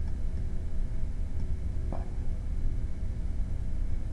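Steady low hum of recording background noise, with one brief short sound about two seconds in.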